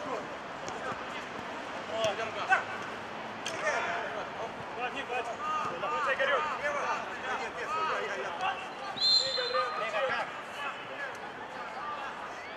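Players' scattered shouts and calls across a small-sided football pitch, with the sharp thuds of the ball being kicked a few times in the first few seconds.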